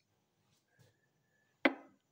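Near silence broken by a single short, sharp tap about one and a half seconds in.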